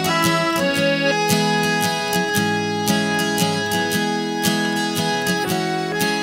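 Instrumental music: a piano accordion playing held chords and a melody over a steady strummed accompaniment in waltz time.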